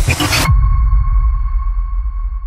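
Electronic logo sting: a loud noisy whoosh that cuts off suddenly about half a second in, leaving a steady high electronic tone held over a deep bass rumble.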